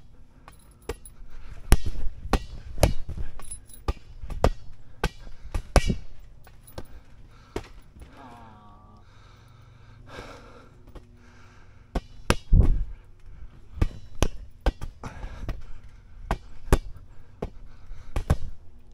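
Irregular sharp thumps and slaps of a large inflated rubber ball being hit by hand and bouncing on a trampoline mat, some strikes much louder than others.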